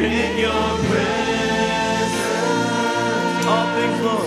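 A slow live worship song: a man and a woman singing over sustained instrumental chords and bass.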